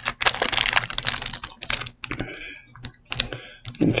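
Foil Pokémon booster pack wrapper crinkling and crackling as it is handled and torn open. The crackle is dense for the first couple of seconds, then thins to scattered crackles.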